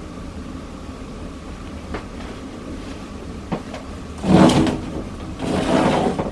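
A window being slid open: two loud scraping pushes about four and five and a half seconds in, with a few light clicks, over a steady low background hum.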